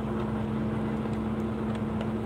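Semi truck's diesel engine and road noise droning steadily from inside the cab while driving, with a steady low hum.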